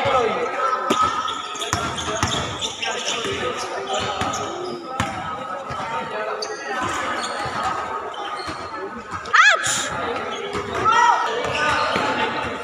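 Basketball bouncing and dribbling on a hard court, the thuds echoing in a large covered hall, with players shouting. A short high squeak about nine and a half seconds in.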